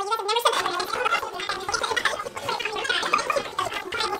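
A person's voice making rapid, garbled, unintelligible vocal sounds, running on without clear words after about half a second.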